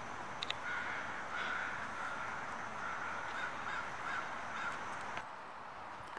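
A crow cawing repeatedly, a run of harsh calls over steady outdoor background noise. Two sharp clicks sound about half a second in.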